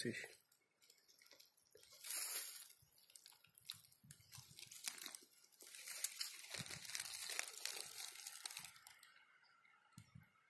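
Footsteps crunching and rustling on dry leaf litter and twigs, in a few separate bursts.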